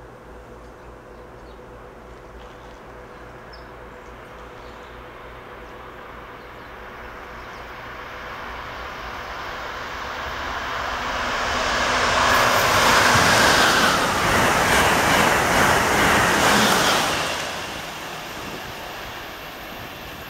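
Amtrak Acela Express high-speed electric train passing at about 135 mph. A rush of wheel and air noise builds over several seconds, is loudest for about five seconds in the second half, then fades as the train recedes.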